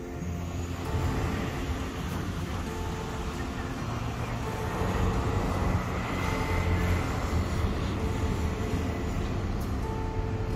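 City road traffic: a steady rush of passing vehicles that grows louder about halfway through. Soft background music with long held notes plays over it.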